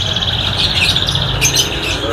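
Many caged domestic canaries singing at once: a dense, continuous chorus of fast, high trills, with a brief sharper burst of song about a second and a half in.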